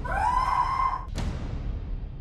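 A woman screams once for about a second, her pitch rising and then held, before a sudden hit cuts in, over a low rumbling background.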